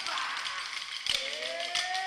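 Kolkali dancers striking short wooden sticks together in rhythm, a quick run of sharp clicks. A sung line comes in about a second in.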